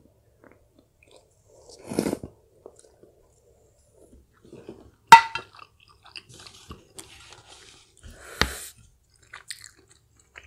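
Close-up eating sounds: a mouthful of dumpling from a spoon taken with a short slurp about two seconds in, then chewing. Just after five seconds a sharp clink with a brief ring, as the spoon is set down against the glass dish, and another sharp knock near the end.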